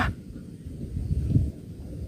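Wind rumbling on the microphone, uneven and a little louder in the middle.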